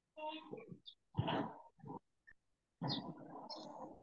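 Faint, broken-up speech in several short bursts with gaps between them.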